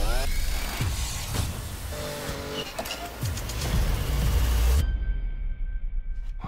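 Dense trailer music mixed with sound effects, with a brief rising whine at the very start. The mix cuts off abruptly about five seconds in, leaving only a quiet held tone.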